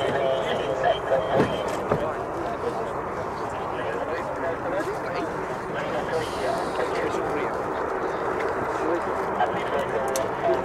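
Indistinct chatter of people talking near the microphone, steady throughout, with no single clear voice.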